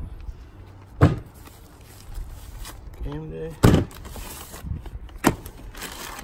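Handling noise of a stack of magazines and a plastic zip bag being moved and set down on a plastic table: three sharp knocks, the loudest just past halfway, over light rustling. A brief murmured voice comes just before the loudest knock.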